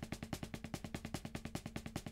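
Drumsticks playing an even, quiet double stroke roll on a practice pad, about ten strokes a second. The sticks are held in a loose fist like a hammer, and the roll is driven from the forearms alone, with the fingers and wrists not working and the stick's rebound doing the rest.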